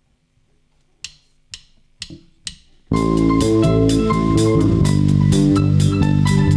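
A live band counted in with four evenly spaced clicks about half a second apart, then coming in together about three seconds in: drum kit, acoustic and electric guitars, bass and keyboard playing the song's instrumental intro.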